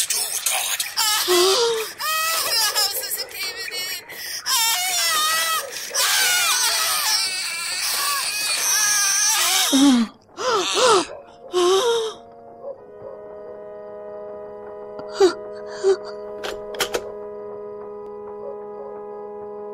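Acted screaming and wailing in terror over dense, crashing noise, breaking off abruptly about twelve and a half seconds in. A steady held musical chord follows, with a few short clicks.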